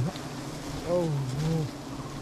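A mass of wild honey bees buzzing steadily around their exposed comb, the colony stirred up by smoke.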